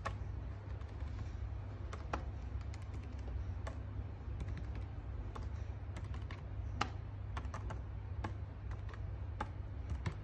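A hand tapping and pressing on the paper pages of a picture book: soft, irregular taps with a few louder ones, over a steady low hum.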